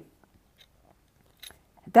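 Near silence with a faint click about one and a half seconds in, then a woman's voice starts right at the end.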